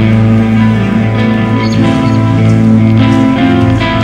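Thrash metal band playing live: distorted electric guitars holding sustained chords over the band, an instrumental passage with no singing.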